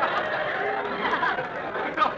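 Studio audience laughter running on under several overlapping voices, a dense murmur of chatter and laughing with no clear words.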